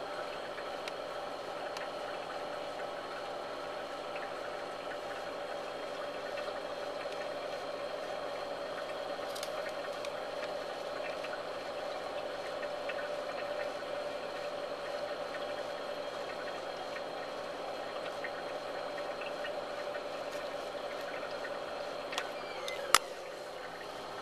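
Steady machine hum with several held pitches, like a small motor, fan or pump running, and one sharp click about a second before the end.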